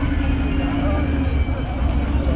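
A motor vehicle engine running at idle: a low rumble under a steady hum.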